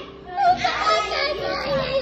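Children's voices: a high-pitched voice calls out about half a second in and holds a long wavering sound for over a second.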